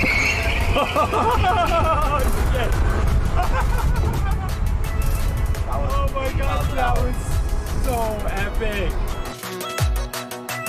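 Excited whoops and laughter from passengers in a fast-moving car over a steady low rumble of cabin and road noise, which cuts off near the end; music plays underneath.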